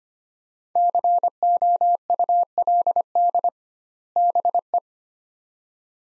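Morse code sent at 25 words per minute as a single-pitch beep keyed in short and long elements, spelling "could" and then "be". A longer gap marks the space between the two words, about three and a half seconds in.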